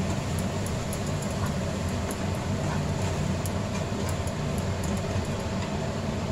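Steady low hum under faint crackling and scraping as a wooden spatula stirs an onion-tomato masala frying in a nonstick pan.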